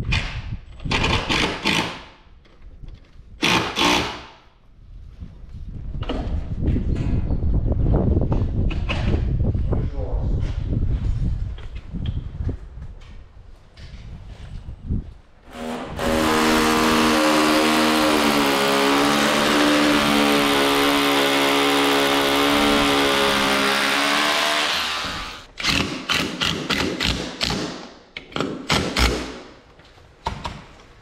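Door-fitting work with hand and power tools. First come irregular knocking and scraping on the wooden door frame. A power tool motor then runs steadily at one pitch for about nine seconds, and a run of sharp knocks and clicks follows.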